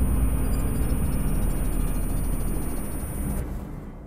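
A deep, noisy low rumble that slowly fades out over the last second or so.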